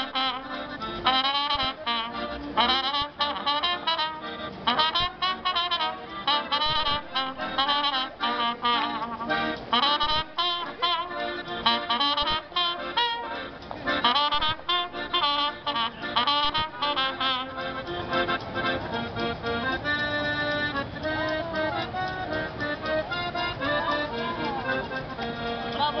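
Trumpet and accordion busking a tune together, the trumpet playing a wavering lead melody over the accordion's chords. About eighteen seconds in the trumpet stops and the accordion carries on alone with held chords.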